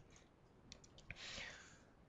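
Near silence, with a few faint computer-mouse clicks about a second in.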